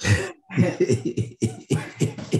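A man laughing in a quick run of short bursts, about five a second.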